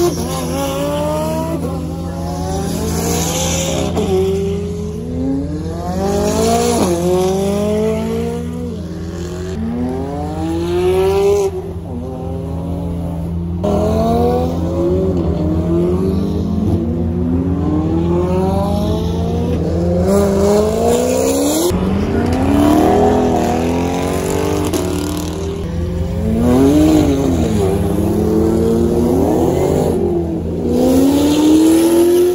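Supercars accelerating past one after another, their engines revving up through the gears in repeated rising sweeps that drop at each shift, over a steady low engine rumble that runs throughout.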